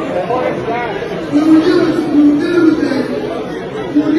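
Only speech: a voice amplified through a hall's sound system, words indistinct, with audience chatter underneath.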